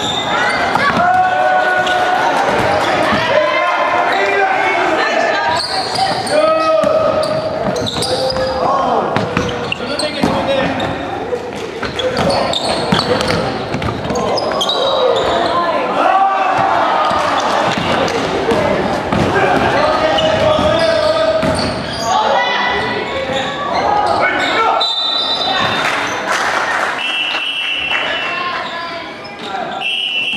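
Basketball bouncing and dribbling on a wooden gym floor amid players' and spectators' shouts, all echoing in a large hall. Near the end come two short, high, steady tones.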